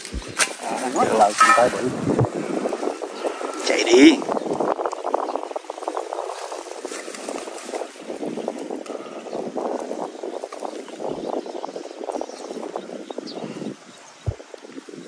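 Hands and a digging stick working open a rat burrow in dry, clumpy clay soil and dry grass: a continuous crackling scrape and crumble of earth, with a louder burst about four seconds in.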